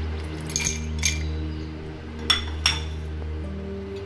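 Ice cubes dropping into a glass mug, four separate sharp clinks, over steady background music.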